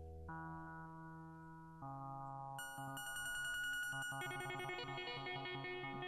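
PlantWave plant-sonification music: a monophonic run of electronic guitar-voice notes following the plant's signal, with slow single notes early on, then notes coming quicker from about three seconds in. The faster note rate is the sign of higher electrical activity in the plant.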